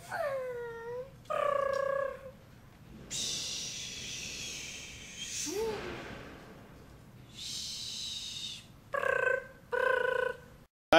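Mouth-made jet noises for a toy jet being flown around by hand: a falling whine, a held note, two long whooshing hisses, a short rising-and-falling squeal in the middle and short pitched bursts near the end.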